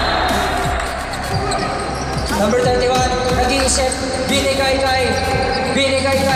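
A basketball dribbled on a hardwood court during a game, bouncing again and again, heard over music and voices in the arena.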